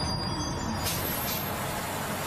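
Large tour bus idling at the curb, a steady engine rumble, with two short hisses of air about a second in.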